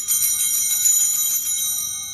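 Altar bells (sanctus bells), a cluster of small bells, shaken for about a second and a half and then left ringing and slowly fading. They mark the elevation of the consecrated host.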